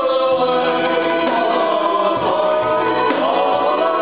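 Acoustic Balkan speed-folk band playing live, with several voices singing together over contrabass balalaika, fiddle and cajón.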